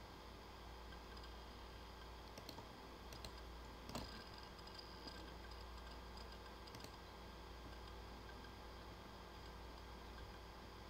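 A few faint computer clicks from mouse and keyboard use, the loudest about four seconds in, over a steady low hum and hiss.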